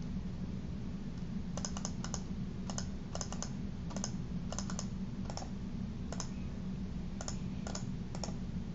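A dozen or so sharp clicks from a computer keyboard and mouse, coming in irregular clusters from about one and a half seconds in, as text is selected, copied and pasted, over a steady low hum.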